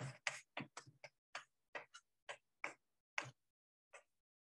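Chalk writing on a blackboard: a dozen or so short, faint taps and scrapes at an uneven pace as letters are written out.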